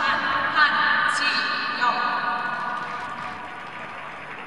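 A voice speaking over the rink's public-address system for the first three seconds or so.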